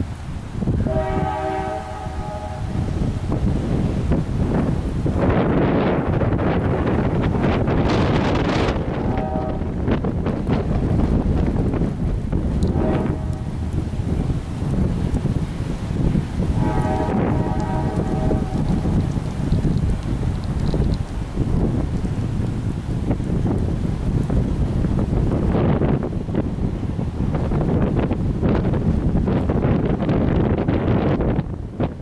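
Strong thunderstorm wind blowing across the microphone in a loud, steady rush. Over it a horn sounds four times, the third blast short.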